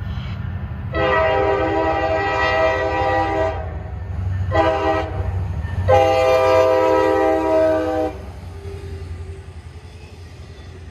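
Norfolk Southern freight locomotive's air horn sounding a long blast, a short blast, then another long blast, over the low rumble of the passing train.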